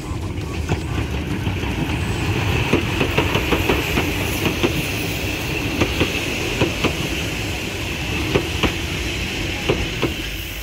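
A narrow-gauge steam train, locomotive 99 7245 and its passenger coaches, pulling slowly into a station. The wheels click irregularly over the rail joints above a steady rumble.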